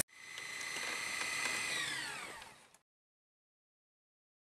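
An edited-in whirring transition sound effect with several high steady tones. About two seconds in it winds down, the tones falling in pitch as it fades out shortly before three seconds.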